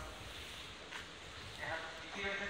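Railway platform ambience during a pause in a station public-address announcement, with the announcer's voice starting again near the end.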